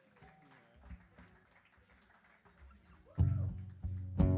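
A quiet pause between songs, then about three seconds in a guitar begins playing loudly, with sustained low notes.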